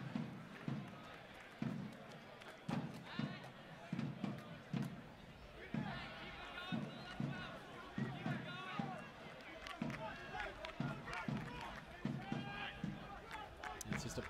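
Match ambience from the soccer ground: indistinct voices from the field and stands, with repeated low thumps about two a second.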